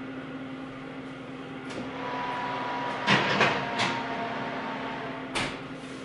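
Kitchen oven door being opened and shut as a cake pan goes in: a few short clicks and knocks, the sharpest near the end, over a steady low hum.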